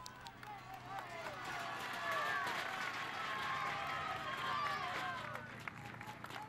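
Outdoor sound of a road cycling race: several voices calling and shouting at once over a steady rushing hiss, building about a second in and easing near the end.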